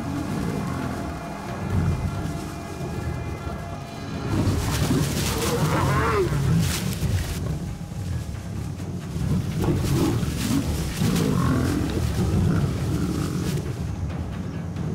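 A pride of lions growling as they fight over a fresh kill, in irregular deep bouts, loudest about four to seven seconds in and again around ten seconds.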